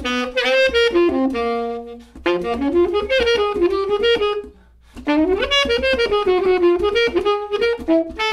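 Legacy TS2000 tenor saxophone in sterling silver finish played solo: melodic phrases of moving notes, with a short pause for breath about two seconds in and another about four and a half seconds in.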